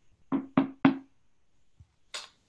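Three quick knocks on wood, about a quarter of a second apart, each with a short hollow ring: a knock at a door.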